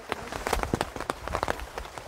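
Rain falling on an umbrella: many irregular sharp drops strike the fabric overhead, with a low rumble underneath from about half a second in.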